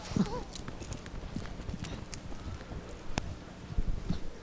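Footsteps and microphone handling noise as a handheld microphone is carried to an audience member at the back of a hall: irregular soft knocks and rustles, with one sharp click about three seconds in.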